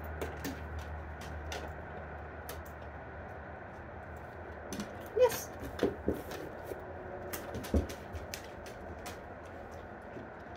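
Scattered light clicks and taps from hands handling treats and a small object, with a cluster of louder knocks between about five and eight seconds in and a short voice-like sound near five seconds.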